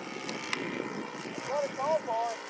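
Faint, steady drone of a radio-controlled Great Planes Tiger Moth biplane's OS 120 four-stroke engine and propeller in flight overhead, running at under half throttle.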